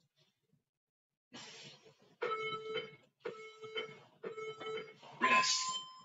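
Interval workout timer counting down the end of a work interval: three short beeps about a second apart, then a longer, higher-pitched final beep near the end.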